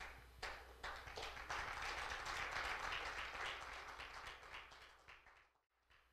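Congregation clapping in a church hall: it swells over a couple of seconds and then dies away, over a steady low electrical hum. The sound cuts out completely for a moment near the end.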